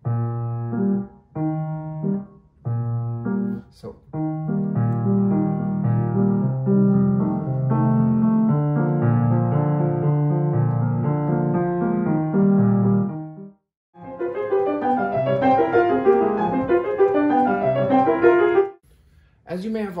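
Steinway grand piano played in short patterned phrases that shape the pulse: four short separated groups of notes, then a longer smooth passage in the low and middle register. After a brief break about two-thirds of the way in, a quicker, higher passage ends a second before the close.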